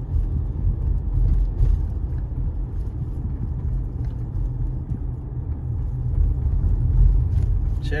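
Steady low rumble of road and engine noise inside a moving car.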